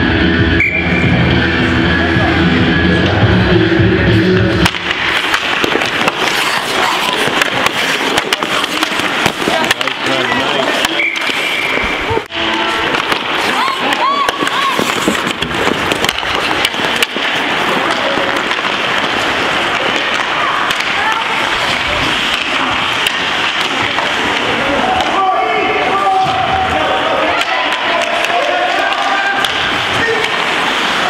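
Ice rink sound during a hockey game: music over the arena speakers stops suddenly about five seconds in as play resumes, followed by spectators' voices and game noise with occasional sharp knocks of stick, puck or boards.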